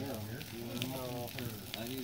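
Bonfire of a burning tyre and magnesium engine block crackling, with sharp pops scattered through it. A continuous voice-like sound of shifting pitch runs underneath.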